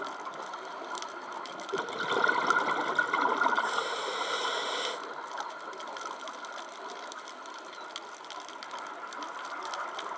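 Scuba regulator breathing heard underwater: a surge of exhaled bubbles that is loudest from about two seconds in to five seconds in, with a hiss near its end, then quieter bubbling and gurgling.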